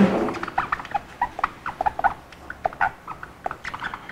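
Marker pen squeaking and tapping on a whiteboard in many short, irregular strokes as words are handwritten.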